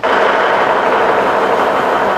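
Lion dance percussion: cymbals clashing in a dense, continuous roll that starts suddenly and holds loud and steady.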